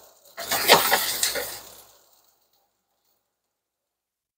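Sliced onions sizzling in a nonstick skillet, with some scraping and clattering, for about the first two seconds; then the sound cuts off abruptly to silence.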